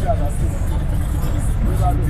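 Steady low rumble of a matatu minibus's engine and road noise, heard from inside the cab, with voices over it.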